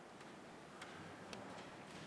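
Nearly quiet room with four faint, sharp clicks about half a second apart.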